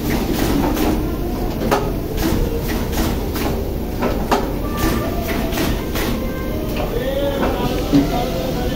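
Garment factory floor din: a steady machinery hum with frequent sharp clacks, mixed with background voices.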